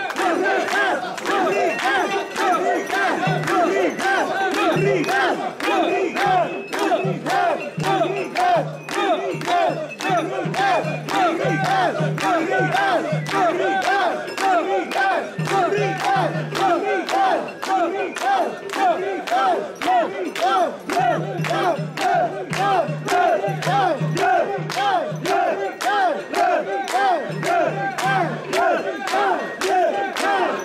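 Crowd of mikoshi bearers chanting loudly in unison as they carry the portable shrine, a regular rising-and-falling call repeated over and over, with a sharp click on the beat about twice a second.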